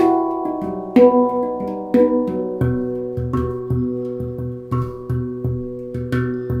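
Handpan played by hand: struck steel notes ring and overlap. From about halfway, a steady pulse of low bass strokes keeps time under the melody.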